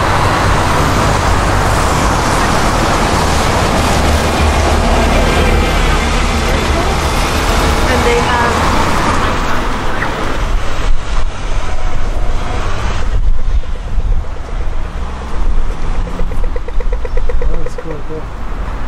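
City street traffic: cars and a double-decker bus passing on a wet road, with people's voices mixed in. The sound turns choppier and more uneven in the second half.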